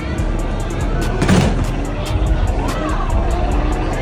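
Background music with a steady beat. About a second in, a single loud thump as the padded punch bag of an arcade boxing machine is struck.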